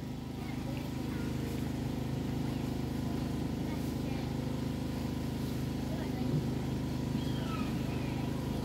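A steady low mechanical hum made of several even tones, with faint voices here and there.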